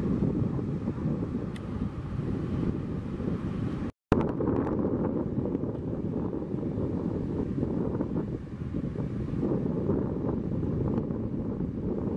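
Wind buffeting the microphone over the steady rush of breaking surf. The sound drops out to silence for an instant about four seconds in.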